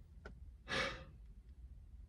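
A woman's single heavy breath, a sigh through the hand held to her mouth, about three quarters of a second in, as she holds back tears.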